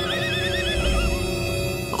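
A high wail with a fast quaver that climbs and then slides down in pitch, fading out about a second and a half in, over background music.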